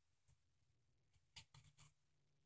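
Near silence, broken in the second half by a few faint, brief rustles from a miniature dollhouse curtain being handled.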